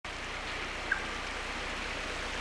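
Steady outdoor background noise, an even hiss like wind or distant traffic, with one short high chirp about a second in.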